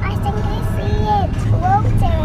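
A little girl's high voice, drawn out and sing-song with long held, bending notes, over the steady low rumble of a car cabin on the move.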